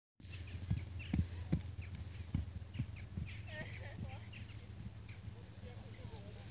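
Hooves of a cantering horse thudding on snow-covered ground, an irregular run of dull hoofbeats, loudest in the first few seconds and then fading as the horse moves off.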